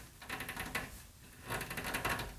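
Faint small clicks and scraping from fingers gripping and straining at a stiff knob on the old metal cabinet, which turns out to be seized solid. The clicks come in two short patches, about half a second in and again near the end.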